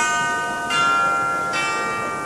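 Logo jingle of bell-like chimes, struck three times a little under a second apart, each chord ringing on into the next.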